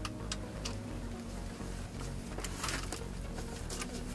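A few faint, scattered clicks from a wrench on a car's oil drain plug as it is worked loose, over a faint steady hum.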